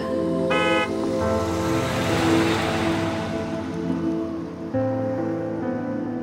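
Slow background music of sustained, held tones, with a short bright high tone about half a second in. A car passes by in the middle, its rush of noise swelling and fading under the music.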